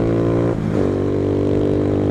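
Motorcycle engine running at steady revs under way, with a brief dip in engine note about half a second in before it settles back to a steady pull, over road and wind noise.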